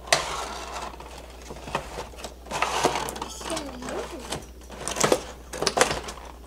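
Cardboard box and plastic packaging handled as a plastic beauty compact toy is pulled out of its box: rustling and scraping with several sharp clicks and knocks.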